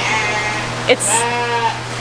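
Lambs bleating, with one long bleat starting about a second in.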